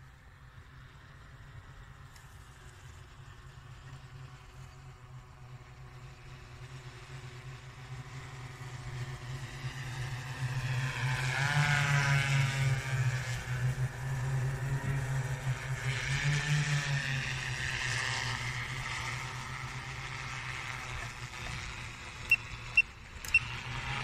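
An electric multirotor crop-spraying drone's motors and propellers droning as it flies in close to the microphone and away again. The sound swells to its loudest about twelve seconds in, peaks again around seventeen seconds, then fades. Four short high beeps come near the end.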